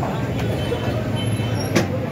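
Busy street-market din: a steady low rumble with background chatter, and one sharp slap near the end as a thin sheet of flatbread dough is swung and flapped by hand.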